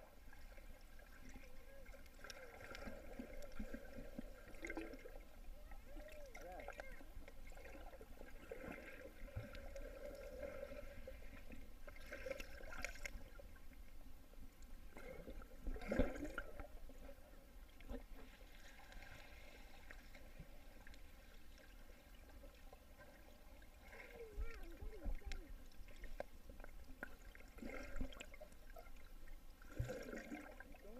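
Faint, muffled underwater sound in a swimming pool, heard through a GoPro's waterproof housing: swimmers moving the water, with muffled voices, and a few louder bursts of water noise, the strongest about halfway through.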